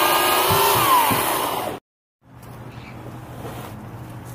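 Portland corded electric chainsaw running at a steady high whine as it cuts through a Christmas tree trunk, then falling in pitch as the cut finishes and the motor winds down. It breaks off sharply about two seconds in, leaving a much quieter, steady low hum.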